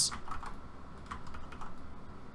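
A few light, scattered clicks from a computer mouse and keyboard, over a faint steady room hiss.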